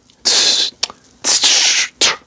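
A man imitating a swung drum rhythm with his mouth, beatbox-style: breathy hissing 'tss' bursts, two long ones with a short one between.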